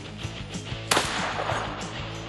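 A single gunshot from a shouldered long gun about a second in, sharp and briefly ringing out, heard over background rock music.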